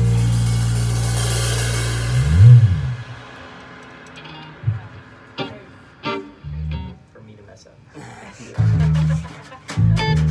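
Small jazz combo of drum kit, bass and guitar: a held chord with a cymbal wash rings out and fades over the first three seconds, with a bass slide near the end of it. After that, sparse playing follows: single bass notes, short guitar notes and a few sharp stick hits.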